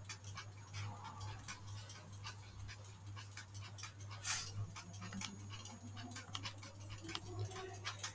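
Faint, irregular clicks of computer keys being typed, with one louder click about four seconds in, over a steady low electrical hum.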